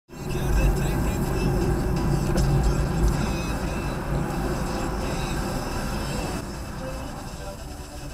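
Car driving in city traffic, heard from inside the cabin: a steady low rumble of road and engine noise. It drops and quietens about six and a half seconds in.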